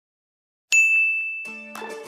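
A single bright bell-like ding strikes suddenly about two-thirds of a second in and rings on, slowly fading; a short music intro starts under it about a second and a half in.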